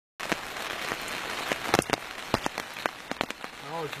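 Rain falling steadily, with frequent sharp taps of single large drops landing among it.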